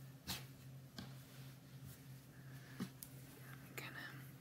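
Faint rustling of fabric being handled and flipped over on a cutting mat, with a few soft taps, over a low steady hum.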